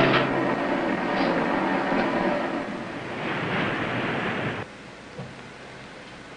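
Submarine periscope hoist motor running as the periscope is lowered: a steady mechanical hum with hiss that cuts off abruptly about four and a half seconds in.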